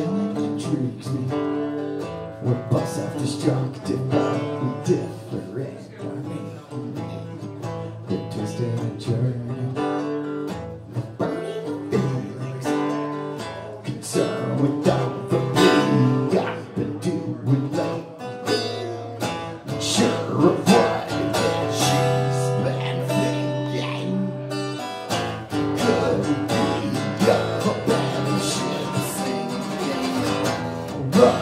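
Acoustic guitar strummed in a steady rhythm, playing chords as a solo song accompaniment.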